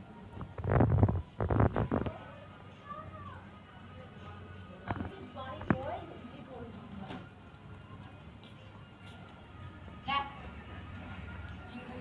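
A young dog chewing and crunching food off the ground, loudest in two bursts in the first two seconds, followed by a few sharp clicks.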